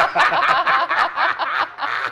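Three adults laughing loudly together, a sustained burst of hearty laughter.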